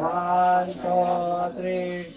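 A voice chanting three drawn-out syllables on one steady pitch, each held for well over half a second, as a game chant.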